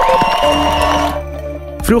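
Short music sting for the NPO Radio 1 logo ident: a rising tone over held bass notes. Crowd cheering runs under it and drops away a little past halfway.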